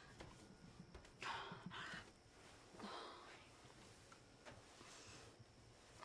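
Near silence with a woman's faint breathing: two sighing exhalations, about one second and three seconds in.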